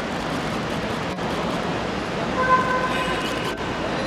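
Steady traffic noise, with a vehicle horn held for about a second a little past the middle.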